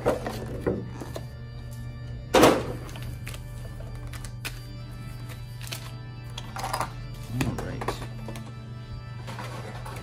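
Plastic blister tray of a trading-card collection box being handled and lifted away, with one loud thunk about two and a half seconds in and a few smaller knocks later. Steady background music runs underneath.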